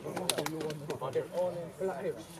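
Indistinct overlapping chatter of several young voices talking among themselves.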